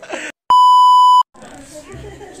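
An edited-in censor-style bleep: one loud, steady high beep lasting about three quarters of a second, switching on and off abruptly with a moment of silence on either side, after a brief bit of voice at the start.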